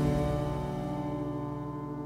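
Soft, slow piano music: one held chord slowly dying away.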